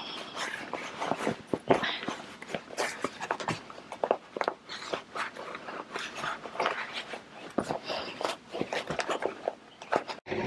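Sewn fabric purse panel rustling and crinkling as it is turned right side out by hand and its corners are pushed out: an irregular stream of short crackles and rustles.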